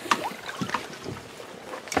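Faint rustling with a few light clicks from a handheld camera being moved and handled.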